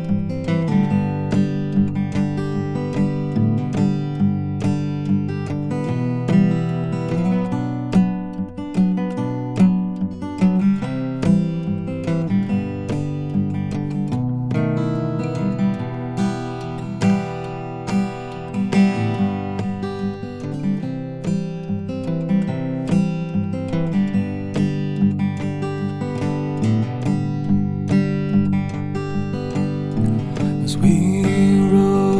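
Cutaway steel-string acoustic guitar played fingerstyle, an instrumental passage of picked notes over bass lines and chords.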